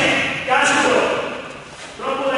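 A man talking in a large echoing hall, with a thud about half a second in.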